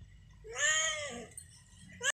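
A domestic cat meows once, a drawn-out call of just under a second that rises and then falls in pitch, starting about half a second in.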